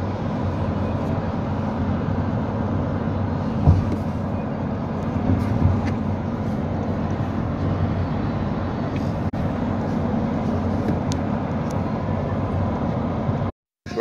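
Steady engine and road rumble heard from inside a moving coach, with a single knock about four seconds in.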